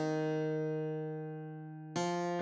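A single computer-rendered guitar melody note, played back from tab notation, held for about two seconds and slowly fading, with the next note plucked right at the end. It is part of a slow, half-speed playback of the arrangement.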